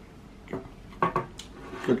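Crisp, flaky croissant crust crunching as it is bitten and chewed, in a few short bursts starting about half a second in.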